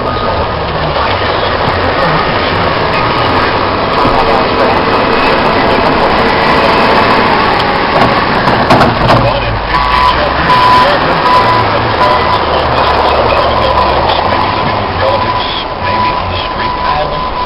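Heavy equipment running amid loud blizzard wind and machine noise, with a reversing alarm beeping repeatedly through the second half.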